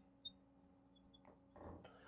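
Near silence with a few faint, brief squeaks from a marker writing on a glass lightboard, over a faint steady hum.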